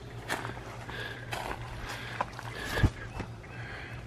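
Handling and movement noise around a large log: scattered light clicks and rustles, with one soft low thump a little before three seconds in.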